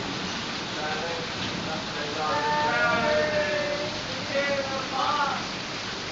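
Heavy rain pouring down, a steady dense hiss, with people's voices talking over it in a few short stretches.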